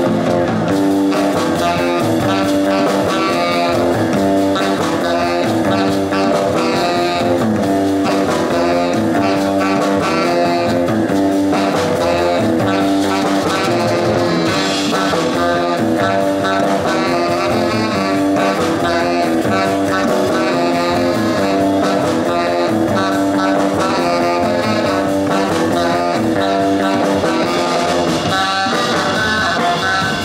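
Live rock band playing: electric guitar, upright double bass, drums and saxophone, with a pitched riff repeating about once a second.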